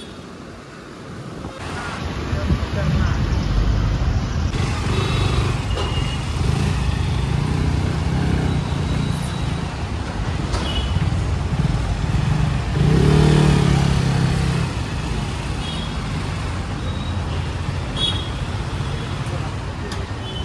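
KTM motorcycle engine running under way, with city street traffic noise around it and a louder engine swell about thirteen seconds in.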